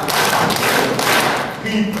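A large audience clapping together: a dense patter of many hands that fades out about one and a half seconds in.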